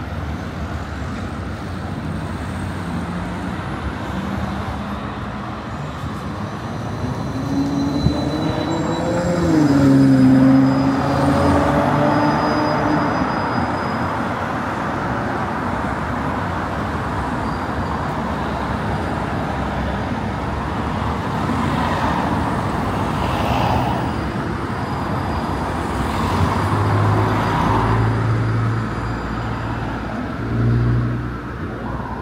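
City street traffic: cars and buses running past steadily. About eight to thirteen seconds in, one vehicle's engine passes close, its pitch rising and then falling, the loudest moment.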